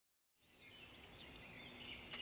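Dead silence, then from about a third of a second in, faint outdoor background with small birds chirping now and then.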